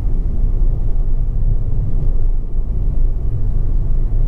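In-cabin noise of a Honda Civic 2.2 i-DTEC, a four-cylinder turbodiesel, on the move: a steady low rumble of engine and road noise.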